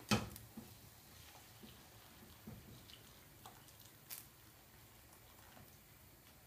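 Vegetable stock poured from a saucepan into a frying pan of softened onion, celery and lentils: faint splashing and dripping of liquid, with a single knock right at the start.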